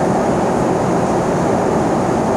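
Steady cabin noise of a jet airliner in cruise flight: a constant, even rush of engine and airflow noise, deepest and strongest in the low range.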